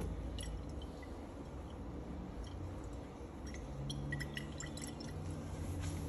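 Water moving and dripping inside a 250 ml glass Erlenmeyer flask as it is picked up and swirled, with a few light glass ticks, over a steady low hum.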